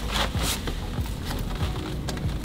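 Fabric rustling and scraping as a magnetic van window cover is rolled up by hand.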